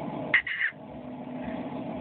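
A pause in a man's talk: a faint steady low hum, with one brief sound about half a second in.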